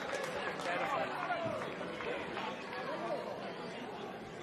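Indistinct chatter of rugby players on the pitch, faint and distant through the pitchside microphones, with no commentary over it.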